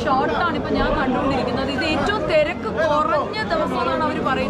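Speech: a woman talking, with chatter in the background.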